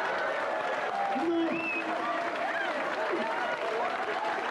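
Audience applauding, with several people talking over one another.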